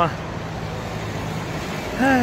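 Steady urban road-traffic noise, a continuous rumble and hiss without distinct events.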